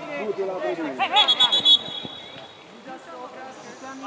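Men's voices calling out around an amateur football pitch, with a loud burst of shouting about a second in. Over the shouting comes a short, high, trilling referee's whistle.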